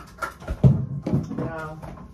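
Knocks and thumps of groceries being handled and set down in a kitchen, the loudest a pair of low thumps about half a second in.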